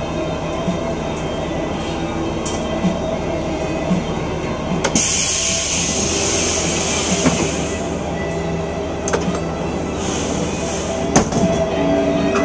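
Car engine heard from inside the cabin, running at low speed and then idling steadily while the car stands still. A hiss rises about five seconds in and fades over the next three seconds, with a few sharp clicks later on.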